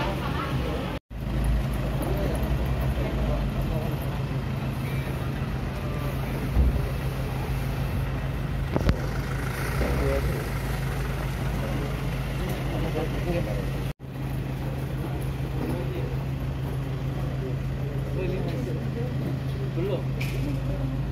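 A steady low engine hum of a vehicle running close by, with people's voices in the background. The sound cuts out completely for a moment twice.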